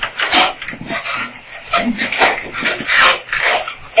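Felt-tip marker squeaking and scraping across flip-chart paper in a quick series of short strokes as words are written by hand.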